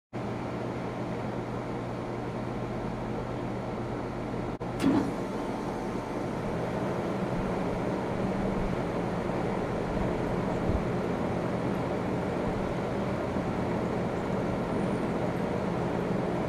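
2009 Carrier Comfort four-ton heat pump running in cooling mode: a steady hum from its Copeland scroll compressor and condenser fan. A brief dropout and a short louder bump come about five seconds in.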